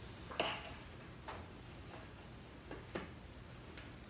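A few faint plastic clicks and taps from a large plastic glue jug being handled and its cap screwed back on, the clearest click about half a second in.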